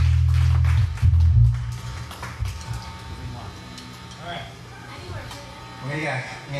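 Live rock band: a loud, low bass note rings out with drum hits for about the first second and a half, then the band drops to a much quieter level with only scattered guitar notes.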